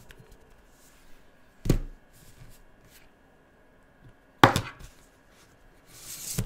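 Plastic felt-tip pens knocking and clicking against a table as they are handled and set down: one sharp knock about two seconds in, then a quick cluster of knocks and clicks a little after four seconds.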